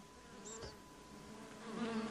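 Faint buzzing of honeybees, a sound-effect bed in a radio drama, the buzz wavering gently in pitch.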